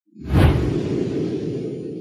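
Whoosh sound effect with a deep low rumble. It rises sharply about a quarter second in, then fades slowly.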